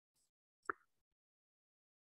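Near silence, broken by a single short pop about two-thirds of a second in.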